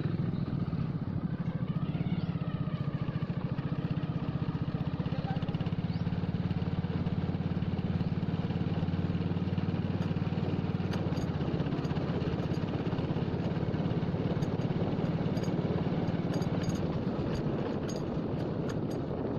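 Motorcycle engine running steadily while riding at an even speed, heard from the rider's seat.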